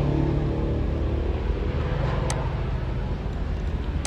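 A steady low motor hum over a background haze, with one light click a little past halfway.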